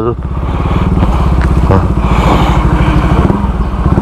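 Motorcycle engine running steadily at low revs, its rapid, even firing pulses close to the microphone.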